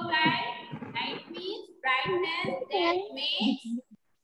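A young child singing in short, high-pitched phrases with brief breaks.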